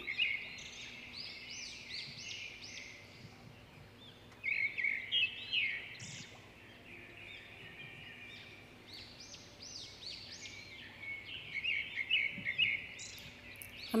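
Small birds chirping in quick runs of short rising-and-falling notes, louder in bursts about four and a half seconds in and again near the end.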